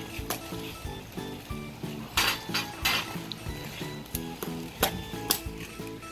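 Claw hammer striking plastic landscape edging: about five uneven, sharp clinking blows, over background music.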